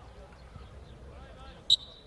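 Referee's whistle: one short, sharp blast near the end, signalling the kick-off restart after a goal. Faint voices carry from the pitch before it.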